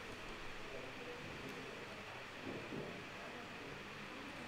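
Faint room tone: a steady low hiss, with one soft brief sound about two and a half seconds in.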